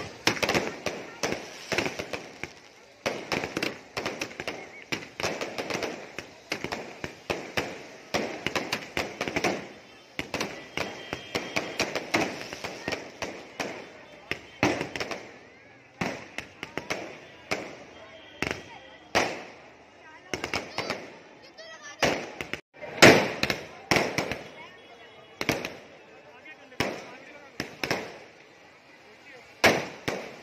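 Fireworks and firecrackers going off in quick succession: a dense, unbroken run of sharp bangs and crackling, with the loudest bangs coming near the end.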